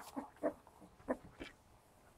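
Newborn puppy making short squeaks and grunts, four or five in the first second and a half.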